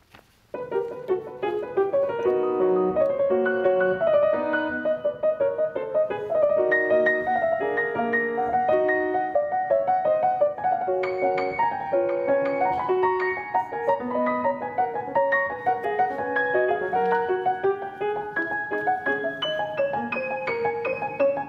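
Steinway grand piano played solo: fast, continuous passagework of quick notes that starts about half a second in and climbs higher from about eleven seconds in.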